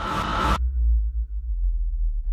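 Dramatic sound effect for a title card: a rising whoosh that cuts off sharply about half a second in, leaving a deep low rumble.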